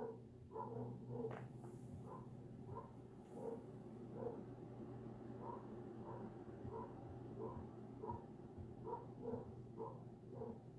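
Dogs barking faintly and repetitively, muffled by distance, about two barks a second, over a low steady hum.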